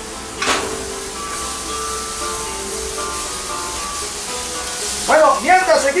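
Background music with long held notes over the steady hiss of beef sizzling in a frying pan, with one short burst of noise about half a second in. A man's voice comes in near the end.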